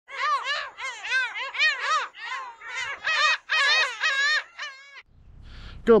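A bird calling in a quick series of short notes, each rising then falling in pitch, in several bursts that stop about five seconds in.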